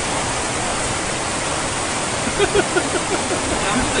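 Steady rushing of running water, with a short burst of a man's laughter about two and a half seconds in.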